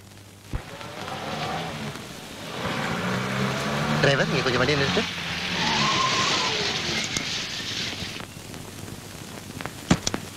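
A car pulling up to a stop, its tyres hissing and skidding for several seconds before the noise cuts off sharply, with voices mixed in.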